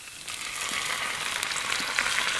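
Cold milk poured into a hot frying pan of charred bacon and caramelised onions, sizzling as it hits the hot pan; the sizzle starts just after the pour begins and grows louder.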